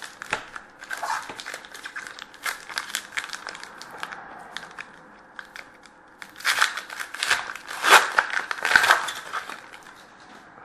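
Hockey card pack's foil wrapper being crinkled and torn open by hand, crackling on and off, with a louder spell of crinkling in the last few seconds.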